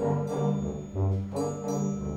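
A school concert band playing sustained chords, brass and woodwinds together, over low bass notes that change about every half second.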